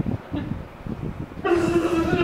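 A man imitating a fly buzzing with his voice: a steady, loud buzz that starts about one and a half seconds in, after a few soft thumps.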